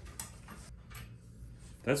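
A light click and faint handling noise as a bent metal support bar is pulled out of a baby bassinet's frame, followed by a man beginning to speak near the end.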